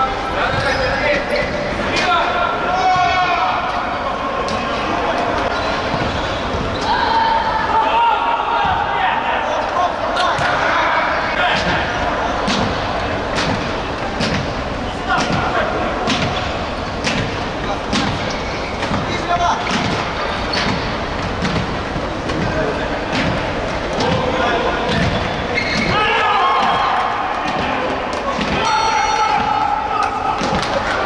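Futsal ball being kicked and bouncing on a hard indoor court, with repeated sharp thuds that echo around a sports hall.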